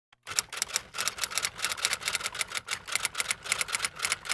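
Typewriter keys clacking in a quick, slightly uneven run of about six or seven strikes a second.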